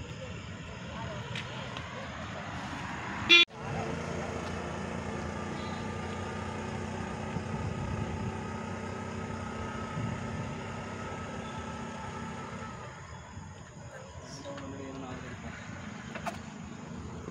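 Road traffic on a city street: motor vehicles running past in a steady wash of engine and tyre noise. A sharp, very loud burst a little over three seconds in is followed by a split second of silence, and the traffic sound eases off near the end.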